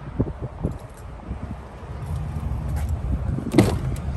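Footsteps on asphalt, then a low rumble, and near the end one sharp click as the rear door latch of a 2018 Ford F-150 pickup is released and the door is pulled open.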